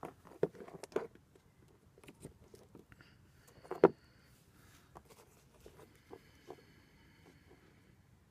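A plastic Battery Tender 800 charger and its cord being handled and set down on a wooden board: a run of small clicks and knocks with cord rustle, the loudest knock about four seconds in.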